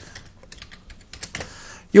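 Faint computer keyboard keystrokes: a few scattered key clicks as a terminal command is typed and entered.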